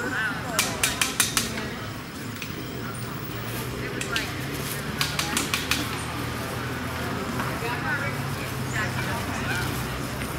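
Busy outdoor ambience of distant voices with a steady low engine hum, broken twice by runs of four or five quick, sharp metallic clanks, once just after the start and again about five seconds in.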